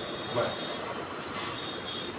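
Marker pen scratching and squeaking on a whiteboard as a word is written, over steady room noise, with a faint thin squeak that comes and goes.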